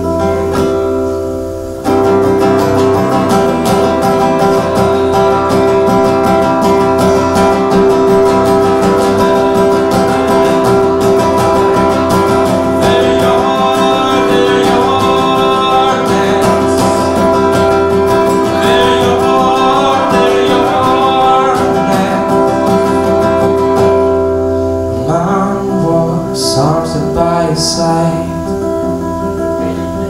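Steel-string acoustic guitar strummed in a live folk-pop song, a full chordal instrumental passage that comes back in loudly about two seconds in after a brief dip. Singing returns over the guitar near the end.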